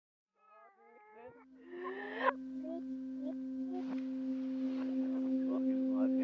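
A song played in reverse. Garbled, voice-like sounds in the first two seconds give way to one low sustained note, with a fainter note an octave above. The note swells steadily louder: a fading note heard backwards.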